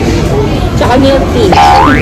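A quick upward-gliding boing-like sound effect in the second half, the loudest thing here, over restaurant chatter and background noise.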